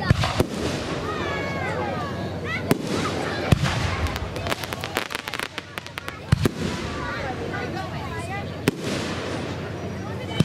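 Fireworks display: aerial shells bursting with sharp bangs at irregular moments, with a quick run of rapid pops in the middle.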